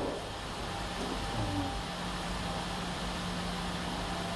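Steady background hum and hiss of room noise through the lecture microphone, with a faint low steady tone coming in about halfway.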